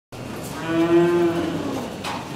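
A cow mooing once: a single drawn-out call of about a second that drops in pitch as it fades.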